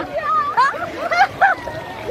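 A woman laughing and squealing over splashing, rushing water as her inner tube is carried along a fast water-park current.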